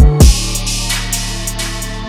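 Drill instrumental beat: a deep bass slides in pitch through quick glides at the start, then holds one long low note under hi-hats and snare hits.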